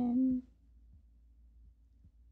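A drawn-out spoken "and" trails off in the first half-second. Then comes the faint scratch and tick of a TWSBI Mini fountain pen's medium nib writing on a paper card.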